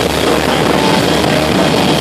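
A live rock band playing loud, electric guitar and drums in one dense, unbroken wall of sound.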